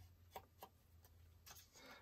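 Near silence, with a few faint soft taps of a foam ink-blending tool dabbing ink onto the edges of a paper cut-out, two of them within the first second.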